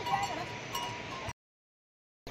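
Neck bells on draught bullocks ringing lightly as the animals move, with a few clearer strikes over a steady ring. The sound cuts off suddenly just over a second in, leaving total silence.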